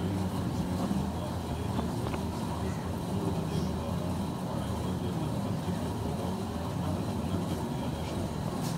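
Indistinct low murmur of several men talking quietly over a steady low rumble, with no clear single voice.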